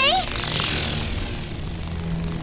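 Animated-film sound effect: a falling whoosh over a low steady hum, as a small winged figure appears.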